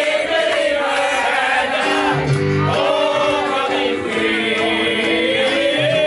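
Live piano-bar performance: a man singing into a microphone over piano chords, with the crowd singing along, picked up by a camera's built-in microphone. Bass notes join the chords about two seconds in.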